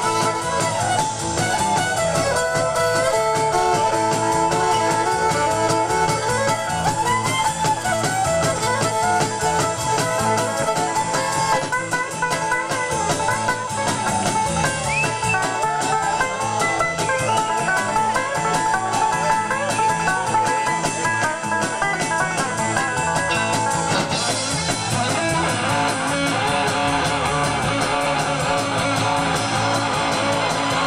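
Live bluegrass-style band playing an instrumental break, a fiddle carrying the melody over banjo, guitar and drums. The sound changes abruptly about 24 seconds in.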